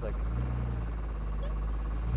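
Air-cooled flat-six engine in a Porsche 914 idling steadily, cold, just after being started, heard from inside the cabin.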